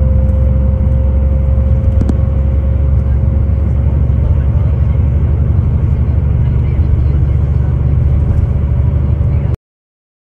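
Coach bus driving on the highway, heard from inside the cabin: a loud, steady low rumble of engine and road noise with a faint steady whine above it, cutting off abruptly near the end.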